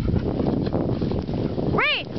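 A rumbling noise runs throughout. Near the end comes one short high-pitched call that rises and then falls in pitch.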